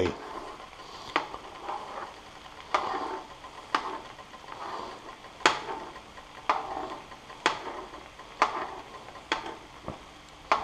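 Small metal spoon slowly stirring beaten eggs into fried rice in a Teflon frying pan, knocking and scraping against the pan about once a second, over a faint sizzle.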